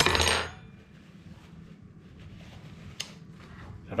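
A short paper-towel rustle at the start, then faint scattered clicks and clinks of tableware and lobster shell being handled against the foil tray, with one sharper click about three seconds in.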